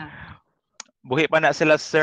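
Speech on an online video call: a voice trails off, the audio drops to dead silence for about half a second with a single sharp click in it, then talking resumes.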